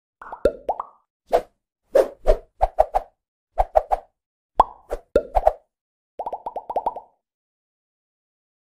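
Cartoon pop sound effects for an animated logo intro: a series of short plops, each bending quickly upward in pitch, falling in irregular clusters. Near the end comes a fast run of about eight pops.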